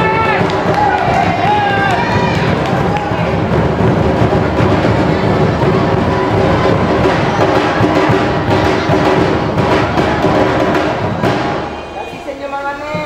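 An ensemble of large double-headed Minangkabau drums (tambua), beaten with sticks in a dense, driving rhythm. A wavering melodic line sounds over the drumming in the first two seconds. The drumming drops away just before the end.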